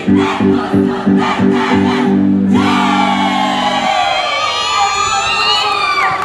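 Live folk dance music with a steady drumbeat and held low notes, which breaks off about halfway through. It is followed by several high calls that slide down in pitch.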